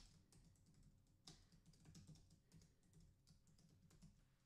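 Faint keystrokes on a computer keyboard, a quick run of light clicks as a line of code is typed.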